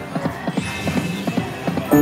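Dancing Drums slot machine's reel-spin sound effect: a quick run of clicking ticks, about six a second, with an electronic chime starting near the end.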